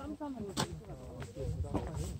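Quiet voices of people talking some way off, with a few short sharp scuffs, about three, scattered through it.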